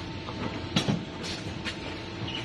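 Tube-bending machine at work: a steady machine hum with several sharp metallic clacks, the loudest a little under a second in.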